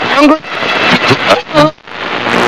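A man's voice speaking over a steady hiss.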